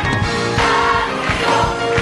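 Church choir singing a gospel song in full voice, holding long notes over a steady beat.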